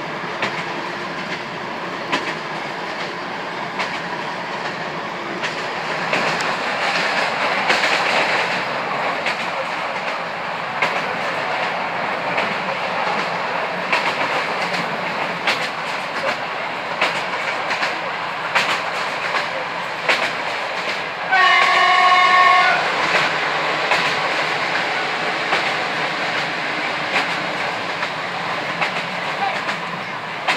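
Heard from inside a moving passenger train: steady rolling noise with wheels clicking over the rail joints. A train horn sounds once for about a second, about two-thirds of the way through.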